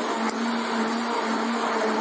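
Electric stick (immersion) blender running steadily in a tall plastic beaker, blending a liquid oat and sugar mixture: an even motor hum.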